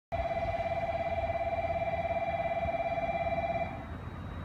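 Electronic station departure bell ringing on the platform: one steady, rapidly trilling tone that cuts off shortly before the end, signalling that the train's doors are about to close.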